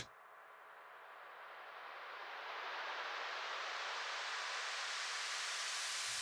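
A swell of hiss-like noise rising out of silence over the first few seconds and then holding steady, with no drums playing: a noise riser in the gap where the drum loop has dropped out.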